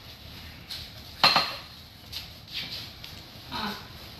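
Dishes and utensils being handled on a kitchen counter: one sharp clack about a second in, then a few lighter knocks and clinks.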